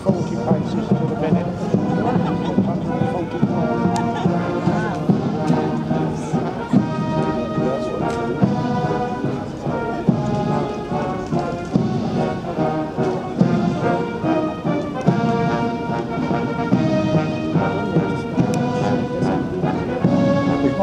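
Military band of bugles and brass instruments playing a march as it marches along the street.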